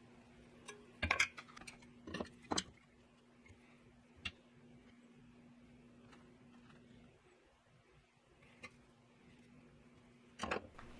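Light knocks and clicks of hand tools being handled and set down on a wooden workbench while marking out a knife block, a cluster about a second in and again near two and a half seconds, then single clicks later, over a faint steady hum that stops about seven seconds in.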